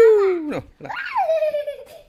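Two long, drawn-out squealing cries from a child's voice. The first falls in pitch over about half a second; the second swoops down from high and holds for about a second.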